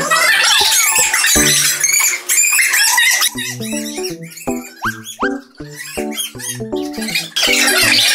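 Background music with short, bouncy staccato notes; it is busier and louder near the start and again near the end.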